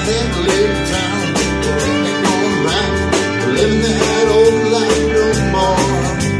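Live country-rock band playing, with electric guitar, bass and drums on a steady beat. A lead line bends around and then holds one long note from about halfway to near the end.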